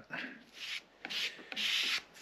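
Metal putty knife scraping epoxy filler across a flat board in several strokes, the longest near the end, as the filler is spread and pressed into small holes.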